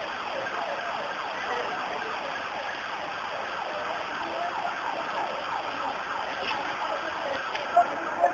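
Emergency vehicle siren sounding in a fast repeating pattern of short falling sweeps, several a second. A few brief, sharper and louder sounds come just before the end.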